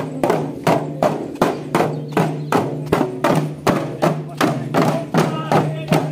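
Hand drums beaten in a steady folk rhythm, about three strikes a second, with men's voices over the beat.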